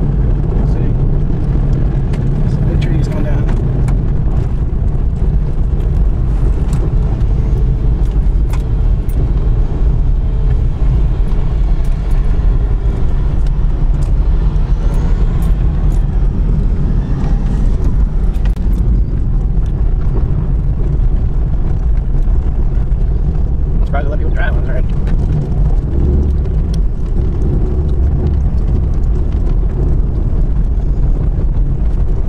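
Steady low rumble of a vehicle driving on a gravel road, engine and tyre noise heard from inside the cab, with scattered sharp ticks through it. A voice is heard briefly near the end.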